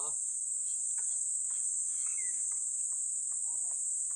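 Steady, high-pitched chirring of crickets, unbroken throughout, with a few faint clicks and a brief chirp about halfway through.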